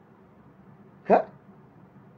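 A man's single short questioning "Ha?", rising in pitch, about a second in, over a faint steady room hum.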